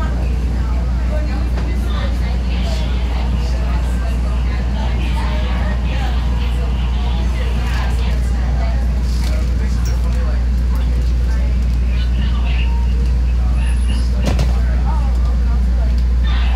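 CTA Red Line subway train running slowly into a station, a steady low hum and rumble from the car.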